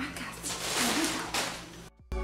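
Rustling of a plastic bag being handled along with fabric decorations, which stops abruptly just before the end.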